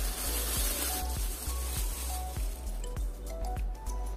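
Thin plastic bag sheeting crinkling as it is pulled off a seed planter, loudest in the first second, over background music.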